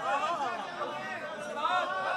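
Many voices talking and calling out at once, overlapping: an audience responding aloud after a couplet is recited.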